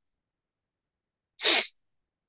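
A person sneezing once, a single short, sharp burst about a second and a half in.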